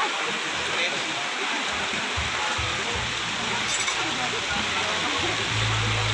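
Crowd chatter and live band music at a wedding reception, under a dense, steady hiss, with a low held bass note from about halfway through.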